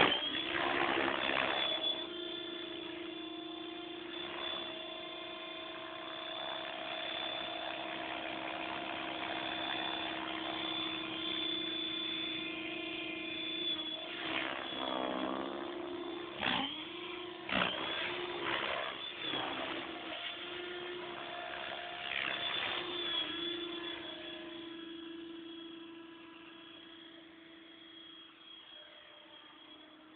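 Compass 6HV electric RC helicopter flying over water: a steady motor and rotor whine. In the middle the pitch dips and swoops several times as the helicopter manoeuvres, and the sound fades gradually towards the end.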